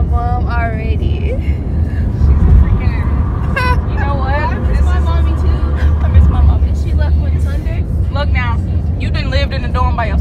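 Steady low road and engine rumble inside a moving car's cabin, with voices and music over it.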